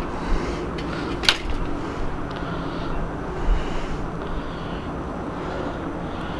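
Bicycle front wheel spinning freely in a workstand, a steady low whir with a sharp click about a second in.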